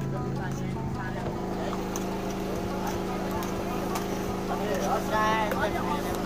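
Indistinct voices of several people talking, over a steady low hum that shifts slightly about a second in.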